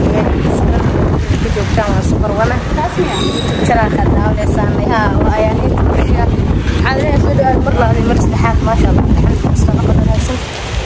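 A woman talking to the camera in bursts over a steady low rumble.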